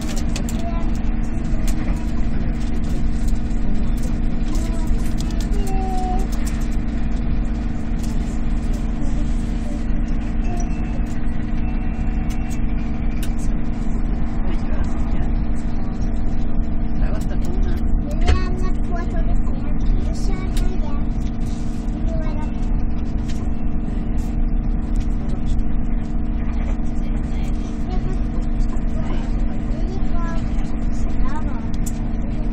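Steady running noise inside an X2000 high-speed train carriage at speed: a constant low roar of the wheels and running gear, with a hum of a few steady tones.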